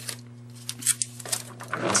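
Light handling noises as painter's tape is worked around a glass candle jar: a few soft clicks and rustles over a steady low electrical hum.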